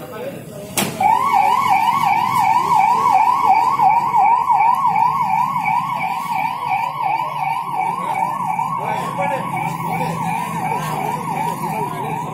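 Ambulance's electronic siren switching on about a second in, then sounding a fast repeating rising-and-falling yelp, about three sweeps a second. It grows a little fainter near the end, with voices under it.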